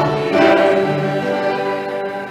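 Choir singing in long held notes.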